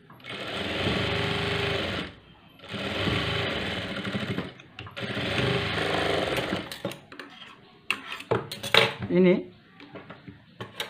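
Industrial flat-bed sewing machine stitching piping along a fabric sleeve edge in three runs of about two seconds each, with short pauses between. After that come only clicks and fabric-handling noises.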